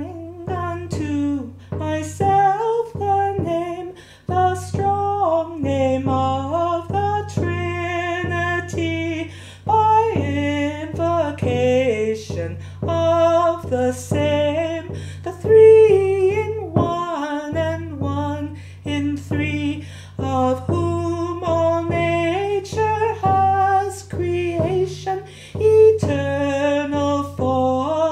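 A woman singing a slow hymn melody over a steady, sustained instrumental accompaniment.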